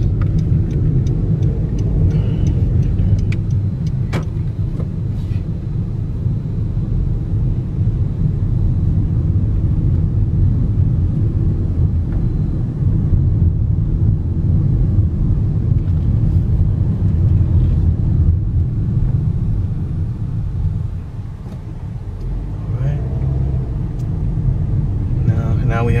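Car interior road noise while driving slowly: a steady low rumble of engine and tyres heard inside the cabin, easing off briefly about three quarters of the way through.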